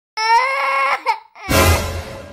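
A high-pitched crying wail held for most of a second, then a short yelp and a loud burst of rushing noise with a deep low rumble about one and a half seconds in.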